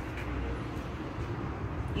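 Steady low rumble of outdoor background noise, with no distinct knock or latch sound.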